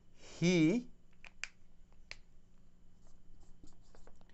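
Felt-tip marker writing on a whiteboard: a few short, sharp strokes, the loudest about a second and a half in, then fainter ticks near the end.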